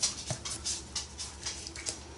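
A dog panting quickly, short breaths about four a second.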